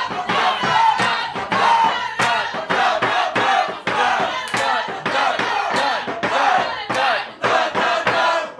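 A marching band's members singing a brass-band tune a cappella: several loud voices carry horn-like lines on nonsense syllables over a steady beat of sharp percussive strikes, about three a second.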